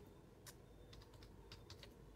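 Faint keystrokes on a computer keyboard: a handful of light, irregular taps as a command is typed.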